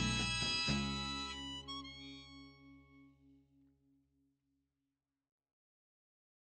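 Music ending: the band's last chord is struck about a second in and rings out, a low note pulsing about four times a second, fading away over about four seconds to silence.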